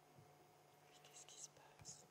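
Near silence with a faint steady hum of room tone, and brief faint whispering about a second in and again near the end.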